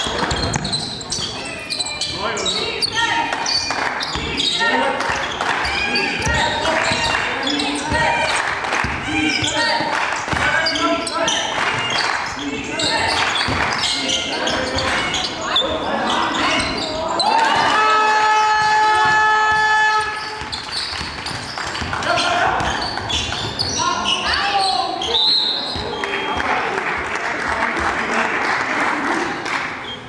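Basketball game in a sports hall: the ball bouncing on the wooden floor amid players' and spectators' shouts. About seventeen seconds in, a horn sounds one steady note for about two and a half seconds. Near the end comes a short, high referee's whistle blast, called for a foul.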